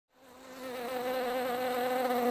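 Honeybees buzzing at a hive entrance: a steady, low wingbeat hum that fades in over the first half second.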